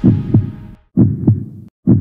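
Heartbeat sound effect used for suspense: deep thumps in 'lub-dub' pairs, about one pair a second, each thump dropping slightly in pitch.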